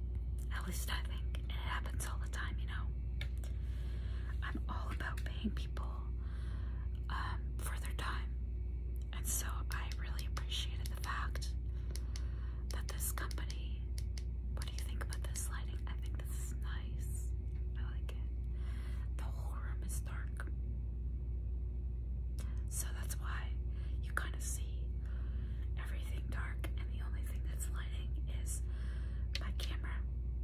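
A woman whispering in unvoiced speech, with a short pause about two-thirds of the way in, over a steady low hum.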